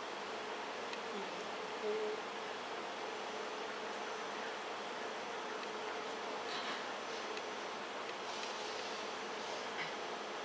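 Steady room hum with a faint buzzing drone running through it.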